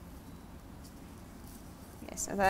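Faint rustling of crepe paper being twisted and folded by hand, over a low steady room hum.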